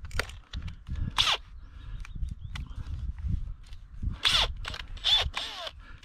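Clicks and a few short rasping bursts as a peg-driver adapter is fitted into the chuck of a Makita cordless drill, with low wind rumble on the microphone; the drill motor is not running.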